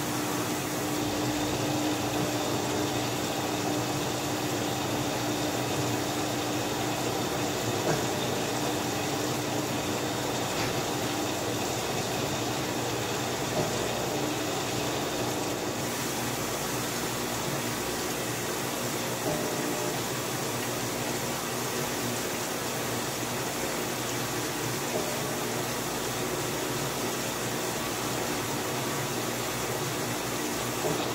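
Top-loading washing machine running, its tub turning the wet laundry: a steady motor hum with water noise. A tone fades out about ten seconds in, and there are a few light knocks.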